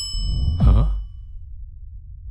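A bright ringing 'ting' sound effect, several high clear tones that fade out over about a second and a half, timed to a wink. About half a second in comes a short breathy whoosh with a low swell, then only a low hum remains.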